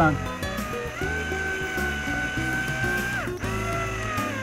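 Background music over a cordless drill driving a screw into the window frame. The drill's whine holds steady from about a second in and winds down a little after three seconds.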